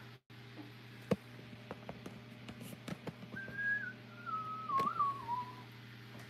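A person whistling a few notes about halfway in: one held note, then a lower phrase that wavers and steps downward. A few light clicks and knocks sound as well.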